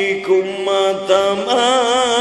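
A man's voice chanting a sermon line in a drawn-out, unaccompanied melodic tune, moving between long held notes and ending on a wavering, trembling note.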